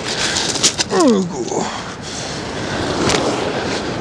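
Surf breaking and washing on a pebble beach, a steady rush, with a short falling voice-like sound about a second in and a couple of sharp clicks.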